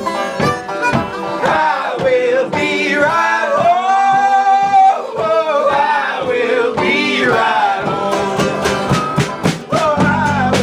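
Several voices singing a folk song together over strummed acoustic guitar and mandolin, with a long held note about four seconds in. Near the end the strumming turns into a quick, even rhythm.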